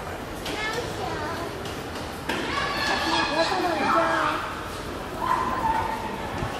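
Indistinct people's voices chattering, growing louder about two seconds in, with a higher drawn-out voice near the end.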